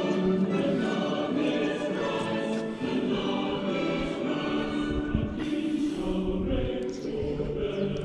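Choral music: a choir singing long held chords, with a few low thumps about five to six seconds in.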